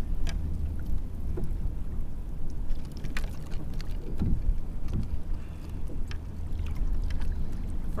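Steady low wind rumble on an action camera's microphone, with choppy water lapping at a kayak's hull and a few light clicks and knocks as a small redfish is unhooked by hand.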